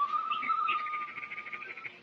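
A high, whistle-like melody holding one long note, with a fast pulsing trill above it, fading away near the end.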